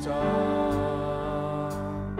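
Worship song sung by the congregation with keyboard accompaniment, holding one long note.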